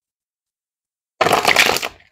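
A deck of tarot cards being shuffled: one quick, loud riffle of card stock starting a little over a second in and lasting under a second. The shuffle is fumbled, the cards slipping loose in her hands.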